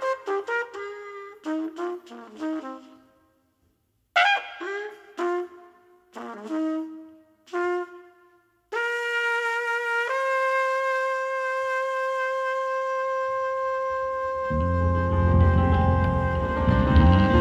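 Trumpet playing alone in short, separated phrases, then holding one long note that steps up slightly in pitch partway through. Near the end the rest of the band comes in underneath with low bass.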